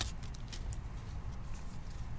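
Trading cards handled in gloved hands: a few faint light clicks and taps as the cards are shuffled and flipped, over a low steady hum.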